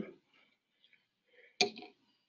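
A single sharp click of lab glassware about one and a half seconds in, with a brief rattle after it, as the graduated cylinder used to pour the soda is set down.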